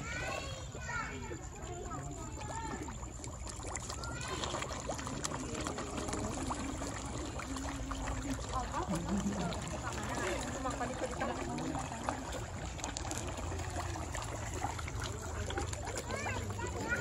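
A dense crowd of pond fish splashing and churning at the surface as they are hand-fed at the water's edge, with people's voices talking nearby.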